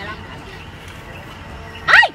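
Low background murmur, then a woman's sudden high-pitched shriek bursts out just before the end, the start of a startled scream.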